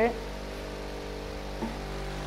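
Large standing electric fan running steadily: an even whirring rush with a low hum under it.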